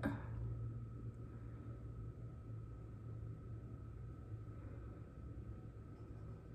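Quiet room tone: a steady low electrical-sounding hum with a faint steady high tone and light background hiss, with no distinct events.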